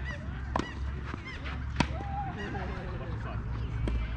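Tennis ball struck by rackets during a rally: three sharp pops, the loudest about two seconds in. Birds call repeatedly in the background.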